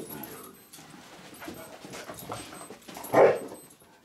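Dogs wrestling in play, with scuffling and dog vocalizations.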